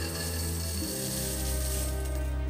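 A pile of coins poured out onto a stone tabletop, a continuous metallic jingling clatter that stops just before the end, over background music.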